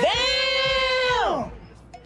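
A man's long, high-pitched yell: one held note that rises at the start and drops away after about a second and a half.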